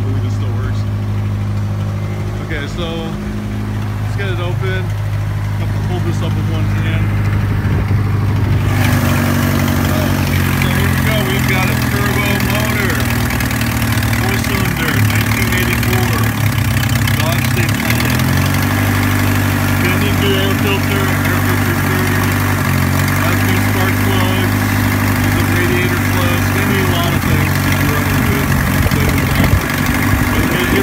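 A 1984 Dodge Daytona Turbo Z's turbocharged 2.2-litre four-cylinder engine idling steadily. It grows louder and fuller about nine seconds in, and its note shifts slightly around the middle.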